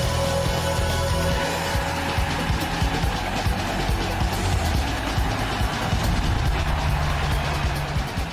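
Television sports programme's title theme music with a driving beat and heavy bass line.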